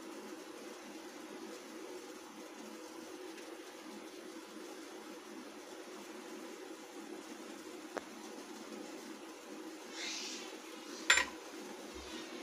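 Quiet steady low background hum while a finger rubs oil onto stainless-steel idli stand plates, with a brief rustle about ten seconds in. A second later comes a single sharp clink of the steel idli plates being handled, the loudest sound.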